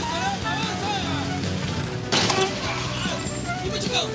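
Voices and background music over street traffic, with a short loud burst of noise about two seconds in.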